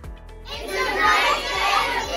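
A class of children cheering and shouting together, bursting in about half a second in, over background music with a steady beat.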